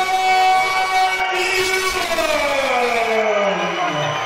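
A long drawn-out shout over the hall's crowd noise. The voice holds one pitch for about a second, then slides steadily down in pitch over the last two seconds.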